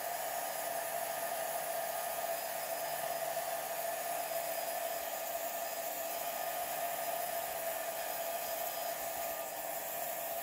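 Handheld heat gun blowing steadily: a rush of air with a steady motor whine, heating an epoxy-like finish on a wood trim panel to soften it for scraping off.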